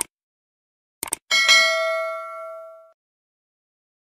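Sound effects for a subscribe-button animation: a click, then a quick double click about a second in, followed by a bright bell ding that rings out and fades over about a second and a half.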